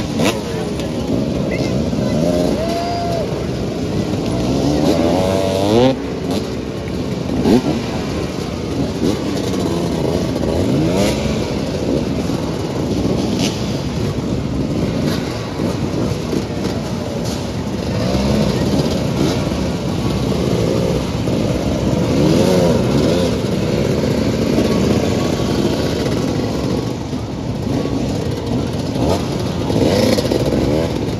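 Several motoball motorcycles idling and having their throttles blipped, the overlapping engine notes repeatedly rising and falling in pitch.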